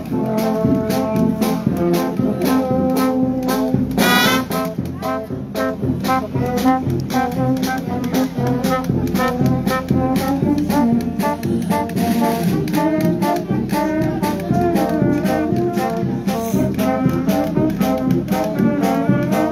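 Street brass band playing a march: trumpets, trombones and tubas over a steady, even beat.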